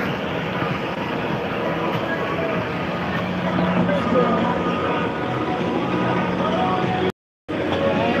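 Steady, muffled rustling noise of a phone's microphone covered by and rubbing against clothing, with faint voices in the background. The sound cuts out completely for a moment about seven seconds in.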